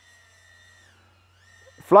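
Faint high whine of a BetaFPV Pavo20 Pro cinewhoop's brushless motors and ducted 2.2-inch propellers in flight, dropping in pitch about a second in as the throttle eases off, then rising again.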